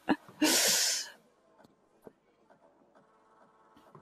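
A short breathy rush of air into a close microphone, like an exhale at the end of a laugh, about half a second in. After it come faint background music notes held steady, with a few soft ticks.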